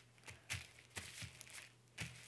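Faint rustling and a few soft crinkles of tissue paper as hands press it flat onto a sheet of cardstock.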